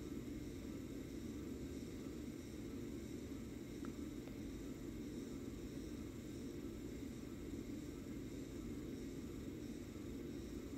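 Steady low room noise, a faint even hiss and hum with no distinct sounds in it.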